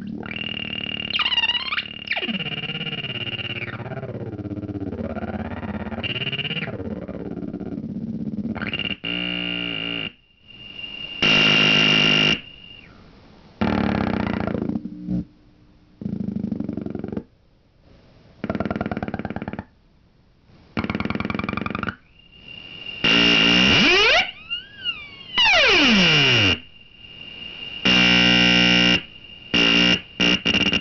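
Homemade optical synthesizer, with an LFO and low-pass filter, played by hand over its light sensors. Buzzy electronic tones glide up and down in pitch for the first several seconds, then cut in and out in short blocks as the hands shade and uncover the sensors. A falling pitch sweep comes near the end.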